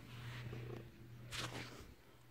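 Domestic cat purring, a faint low rumble that breaks briefly about once a second with its breaths. A short rustle is heard about halfway through.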